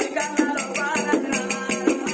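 Telangana Oggu Katha folk music: small hand cymbals and a jingling frame drum keep a quick, steady beat while men's voices sing.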